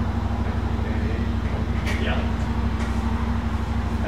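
The 692 cc single-cylinder four-stroke engine of a KTM 690 Enduro R idling steadily, with a fast, even pulsing beat.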